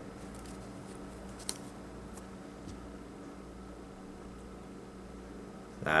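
Steady room hum with a few faint, soft ticks of playing cards as a deck is spread into a large fan on a cloth close-up mat.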